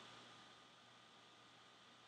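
Near silence: faint room tone with a low steady hiss.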